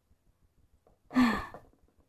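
A person sighs once, a breathy voiced sigh that falls a little in pitch, starting just past the middle. Before it there is near silence.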